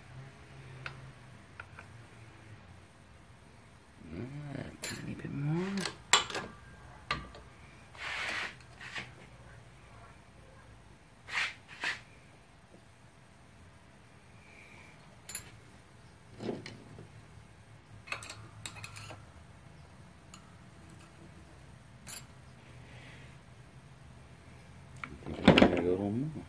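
Scattered clicks and knocks of metal press parts, washer and control arm being handled during a bushing press, with a short sliding, squeal-like sound around five seconds in and a louder clatter with a brief voice-like sound near the end.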